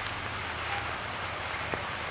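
Light rain falling, a steady even hiss.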